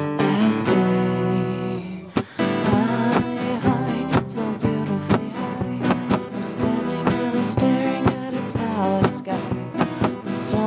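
Two acoustic guitars strummed under a sung vocal melody. A held chord rings and fades over the first two seconds, then after a brief drop the steady strummed rhythm and singing start again.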